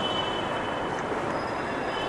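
Steady, even rushing background noise with no distinct events, fairly loud beneath the recording.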